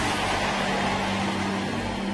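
Sustained low keyboard pad chord holding steady under an even wash of noise that slowly fades.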